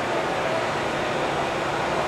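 Steady background noise of an outdoor market, with faint voices in it.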